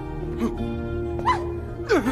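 Background drama score of sustained held notes, with three short whimper-like vocal cries that rise and fall in pitch over it.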